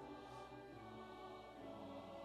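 Church choir singing a quiet passage of held chords that shift about once a second.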